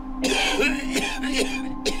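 A man coughing and choking in harsh bursts after a swig from a bottle of bleach: one long rasping fit about a quarter second in, then a shorter cough near the end, over a low steady music drone.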